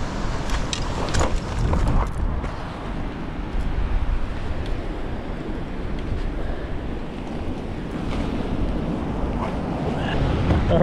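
Wind buffeting the microphone, with ocean surf behind it. A few short clicks and knocks in the first two seconds.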